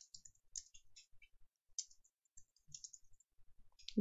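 Faint, irregular keystrokes on a computer keyboard as a short sentence is typed.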